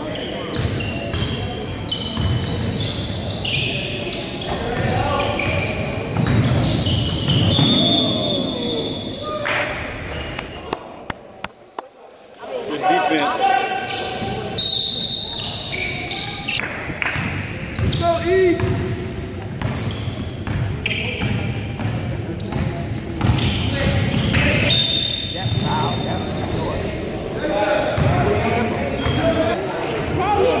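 Basketball being dribbled on a hardwood gym floor during a game, with indistinct players' and spectators' voices echoing in a large hall and a few short high-pitched squeaks.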